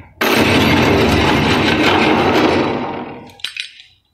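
A sudden loud crash of something breaking, a dense noise that holds for about two and a half seconds and then fades out, followed by a few small clicks.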